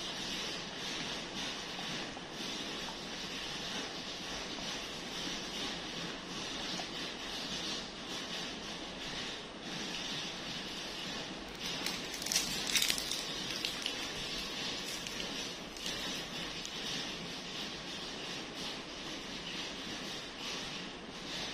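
A dog eating fried noodles off a glass tabletop: small wet licking, smacking and chewing clicks, off and on, over a steady hiss, with a louder flurry of clicks about twelve seconds in.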